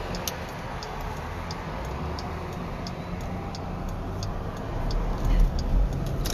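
Car turn signal clicking steadily, about three clicks every two seconds, as the car turns in, over the low rumble of the car's cabin on the road.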